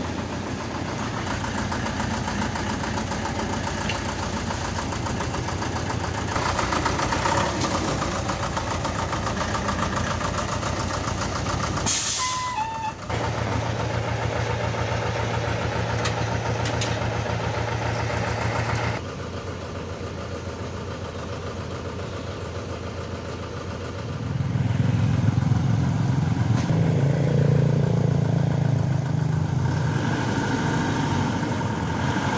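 Diesel engine of a Thaco Forland dump truck running steadily, with a brief sharp sound about twelve seconds in. The engine gets louder from about 24 seconds in as the truck moves off.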